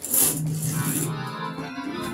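Nord Electro 2 stage keyboard played with an organ sound: a loud, noisy crash of keys right at the start, then a busy flurry of changing chords and notes.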